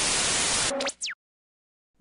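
Television static hiss, a steady even noise, that cuts off after about three-quarters of a second into a couple of quick falling tones, like an old TV set being switched off, leaving silence for the second half.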